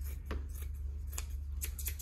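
Westcott scissors cutting through four layers of cotton fabric, a series of separate snips over a steady low hum.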